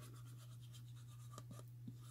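Faint scratching of a liquid glue bottle's tip scribbled across a paper cup, with a couple of light ticks, over a low steady hum.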